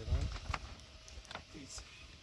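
A brief voice right at the start, then a few light clicks and rustles of plastic sheeting and cord being handled and tied.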